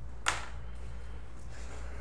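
A steady low hum, with one short sharp sound about a quarter of a second in.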